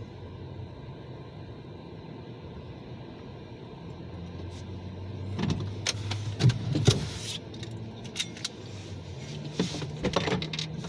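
A car idling, heard from inside the cabin as a steady low hum. From about halfway through, a run of sharp clicks, rattles and knocks joins it, loudest at about six and a half and seven seconds in.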